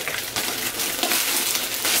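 Clear plastic packaging crinkling and crackling steadily as it is handled and pulled off a lunch tote.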